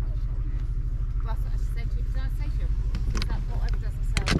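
Outdoor background with a steady low rumble, faint voices of people nearby, and a few light clicks near the end as plastic action figures are handled on a table.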